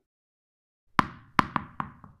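Four short percussive pops from a logo-intro sound effect, the first about a second in and the rest in quick succession, each with a brief ringing tail, one for each cartoon tennis ball appearing.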